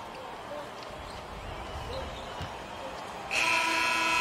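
NBA arena end-of-quarter buzzer: a steady, buzzy horn tone that starts about three seconds in and holds, marking the game clock running out. Before it, quiet court sounds with the low thumps of a basketball being dribbled.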